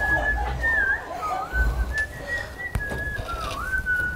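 Someone whistling a slow tune: one clear note held, then dipping down and gliding back up several times. A single sharp click comes near the end.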